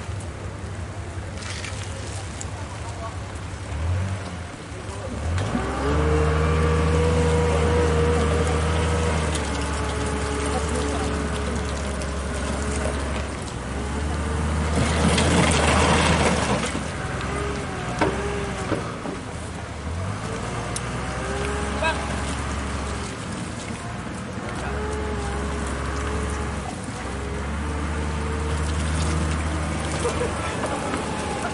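Diesel engine of a wheel loader running close by, a low steady drone that drops out and comes back several times, with a loud rush of noise about halfway through. People's voices talk over it.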